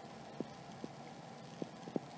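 Faint, irregular light taps of a stylus on a tablet screen while handwriting, about four small clicks.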